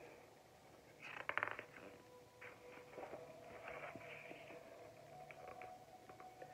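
A hardcover picture book's page being turned: a brief crackle of paper about a second in, then faint rustling as the book is handled. A faint steady hum sits underneath.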